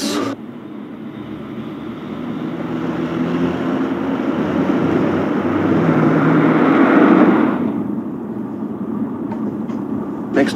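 A car driving along a street, its engine and tyre noise growing louder to a peak about seven seconds in, then dropping suddenly to a duller, steady low hum.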